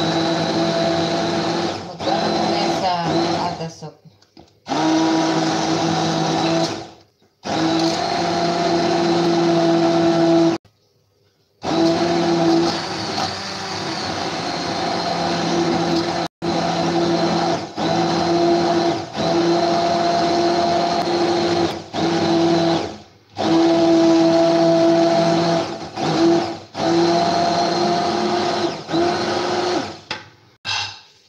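Handheld immersion blender puréeing cooked lentil soup in a pot: a steady motor hum, switched off and on again several times with short pauses, the longest about a second.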